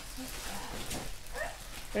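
Thin black plastic garbage bag crinkling and rustling as clothes are dug through by gloved hands, with a brief high rising whine about a second and a half in.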